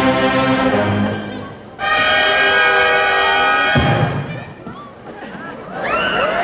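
Orchestral music: two held chords, the second and louder one lasting from about two to four seconds in and cut off with a low thump, then quieter.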